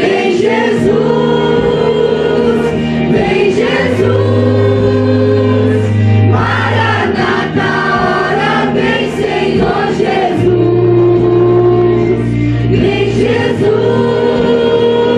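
A group of young singers singing a gospel worship song together into microphones, in harmony with long held notes. Sustained low accompaniment notes come in under the voices a few seconds in and again near the end.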